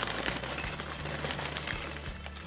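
Lay's potato chips pouring from their bag onto a plate: a steady, dense crackling patter of many small chips landing and sliding over one another.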